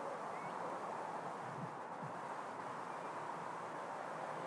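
Faint, steady outdoor background hiss with no distinct events.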